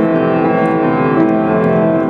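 Piano playing, with many notes ringing and overlapping.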